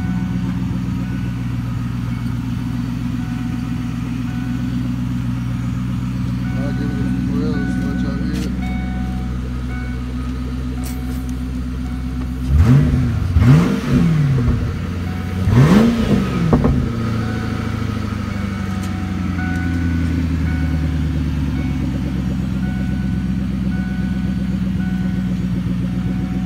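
1997 Ford Mustang GT's 4.6-litre V8 idling steadily, with the throttle blipped three times about halfway through: two quick revs close together, then a third, each rising and falling straight back to idle.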